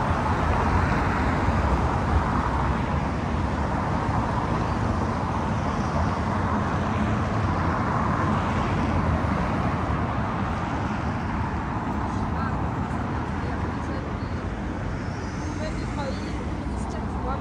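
Steady city traffic noise: cars running along a wet street, their tyres hissing on the road.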